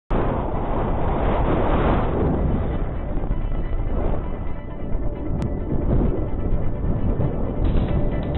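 Wind noise on the microphone, loudest in the first two seconds, with background music underneath.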